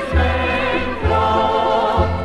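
A choir singing a Dutch hymn with sustained chords over a low bass line; the harmony and bass note change about a second in.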